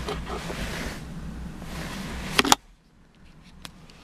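Steady low background hum with some handling rustle, then a sharp double clunk about two and a half seconds in, after which the outside background cuts off abruptly: a Vauxhall Astra's door being shut. A couple of faint clicks follow in the quiet cabin.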